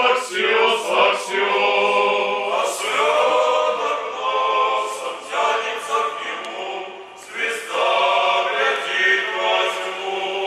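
A male choir of Orthodox deacons singing a cappella in harmony, in several phrases of held chords with short breaks between them.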